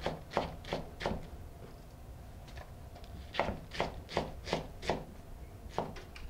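Serrated knife shredding a head of iceberg lettuce on a cutting board: crisp cutting strokes, about three a second, in two runs with a pause of about two seconds between them.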